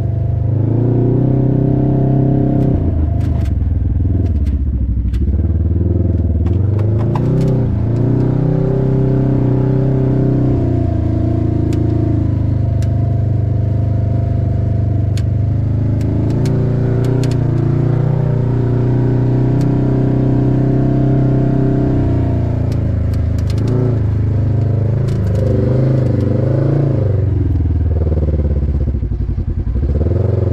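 Side-by-side UTV engine running under way on a rough dirt trail, its pitch rising and falling several times as it speeds up and eases off. Scattered ticks and clatter from the machine rattling over the ground.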